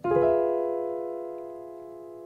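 Piano chord, an F diminished major seventh (F, A-flat, B, E), struck once just after the start and held, slowly dying away.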